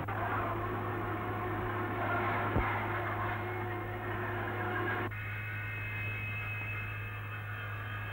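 Steady low mains hum on an old film soundtrack, under a noisy background that changes abruptly about five seconds in to a thinner, steadier high tone, with one short click about two and a half seconds in.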